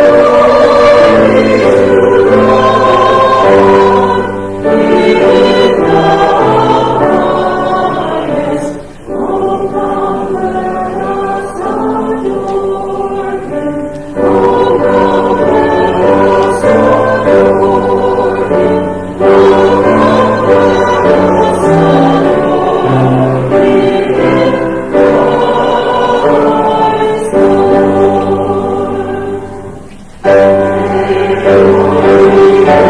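Small church choir singing a hymn, in phrases of about five seconds with short breaks between them.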